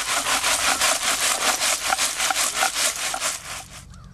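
Rapid, even back-and-forth scraping with a gritty rasp, about seven strokes a second, from excavation work in shell-midden soil.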